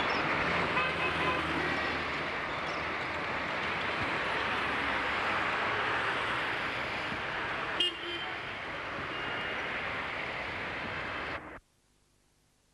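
Street traffic noise, steady, with a few short car-horn toots in the first two seconds and a sharp click about eight seconds in. The sound cuts off abruptly shortly before the end.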